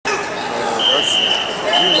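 Voices and crowd chatter echoing in a large gymnasium during a wrestling match. A referee's whistle sounds twice with a high, steady tone, first for under a second and then more briefly.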